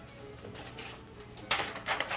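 Scissors cutting through a sheet of printer paper, with a short run of snipping about one and a half seconds in, over faint background music.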